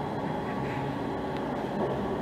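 Steady outdoor urban background rumble with a faint low hum running under it, with no distinct events.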